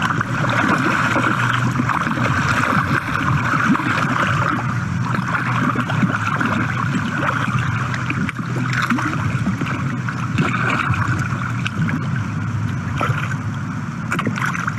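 Pond water churning and splashing as trout rise to take pellet food at the surface, under a steady rushing noise of water.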